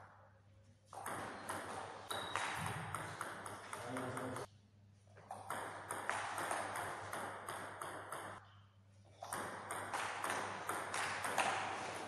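Table tennis ball clicking off the rackets and the table in quick rallies: three runs of rapid sharp knocks, each broken off by a short pause.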